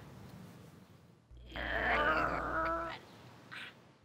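A woman's drawn-out, strained vocal groan of effort lasting about a second and a half, as she tries and fails to crack the pavement with her hand, with a low rumble beneath it.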